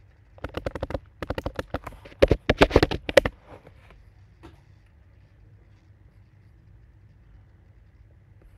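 Computer keyboard typing: a quick run of key clicks for about three seconds, the last strokes the loudest, then only a faint low hum.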